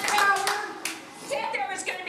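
Audience applause dying away within about the first half second, with a stray clap just before a second in, while a woman's voice talks over it and goes on.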